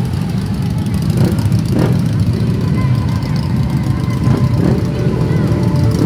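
Many motorcycle and scooter engines idling together, a dense steady rumble, with the voices of a crowd over it.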